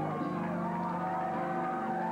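Live slow blues band music: electric keyboard chords held steady, with a wavering melody line gliding above them.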